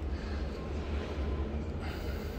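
Steady low rumble of background noise with a faint hiss over it and no distinct clicks or knocks.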